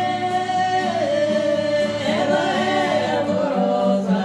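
Two men singing a sertanejo duet in harmony to acoustic guitar, holding one long note that steps down in pitch about a second in.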